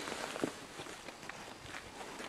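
Faint rustling and soft knocks of handling and clothing close to a camera's microphone as it is being fixed to a hat, with one clearer knock about half a second in.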